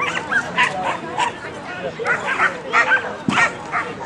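Dog barking and yipping in quick succession, short high calls one after another, with one sharp knock a little after three seconds in.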